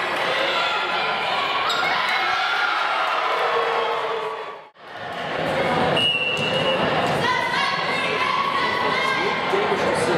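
Volleyball match audio in a gymnasium: the ball is struck during rallies, and players and spectators shout and call over it, with a hall echo. The sound fades to silence for a moment near the middle and then comes back.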